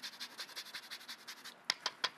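Lemon rind being rubbed across a rasp-style zester: a faint run of rapid, even scraping strokes. A few sharper clicks follow near the end.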